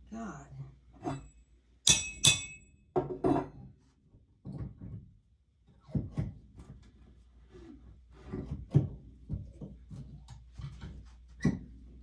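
Claw hammer knocking and prying at a long nail in a wooden shelf: two sharp metallic strikes with a brief ring about two seconds in, then scattered knocks. Short bits of voice from the person working come in between.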